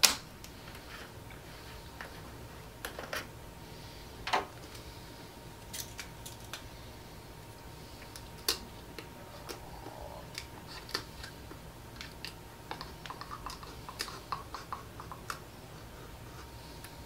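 Irregular light clicks and taps of a plastic ink bottle being handled while white ink is poured into a UV printer's ink tank. The sharpest click comes at the very start, and a run of small ticks comes near the end, over a faint steady high hum.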